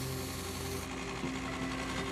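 Small bench belt grinder running with a steady motor hum while a steel knife blade is sharpened against its abrasive belt; the high grinding hiss fades out a little before halfway.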